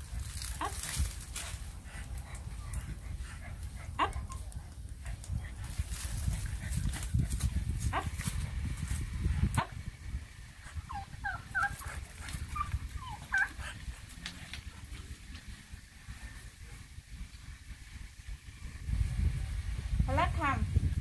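A dog gives several short, high whines a little past the middle, over a steady low rumbling noise on the microphone, with a few sharp clicks.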